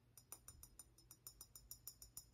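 Faint, rapid fingernail taps on a small corked glass bottle: a quick run of light glassy clicks, about six a second.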